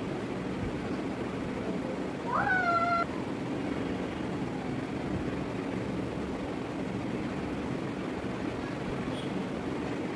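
A cat's single short meow about two seconds in, rising in pitch and then held for a moment, over a steady background hum and hiss.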